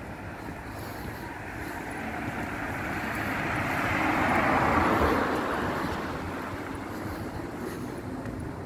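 A Toyota Prius passing close by, its tyre and road noise swelling to a peak about halfway through and then fading, over a steady street background.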